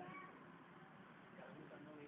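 Near silence: faint background noise with a few faint, brief pitched sounds.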